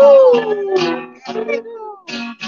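Acoustic guitar strummed while a group of people sing. One voice swoops up into a long, howl-like cry that slides slowly down over about a second.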